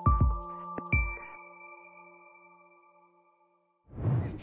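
Short electronic audio-logo jingle: a few quick hits with chime-like ringing tones, a last hit about a second in, then the held tones fading out over a couple of seconds.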